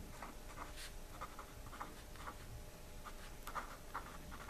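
Pen writing on paper: a faint run of short, irregular scratches as a word is written out by hand.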